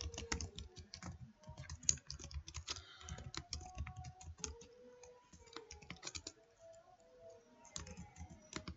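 Computer keyboard typing: a quick, irregular run of quiet keystrokes.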